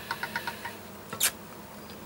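Hand-cranked pasta machine used for polymer clay, turning: a quick run of light clicks from its rollers and gears that stops under a second in, then one sharper click a moment later.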